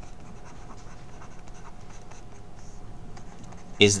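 Handwriting: a pen writing out words, a continuous run of small scratches and ticks, followed by a spoken word near the end.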